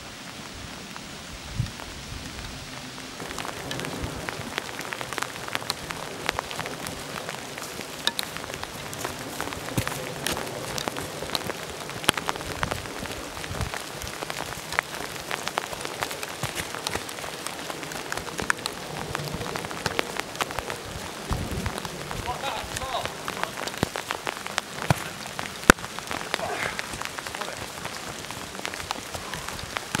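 Rain falling, with many sharp drop clicks close to the microphone over a steady hiss.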